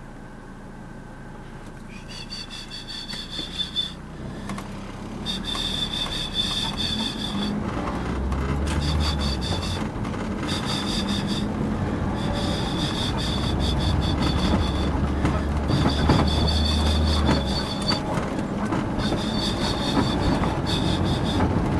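Car cabin noise while driving: engine and road rumble that grows louder as the car picks up speed. A thin, high-pitched whine comes and goes in stretches of a second or two.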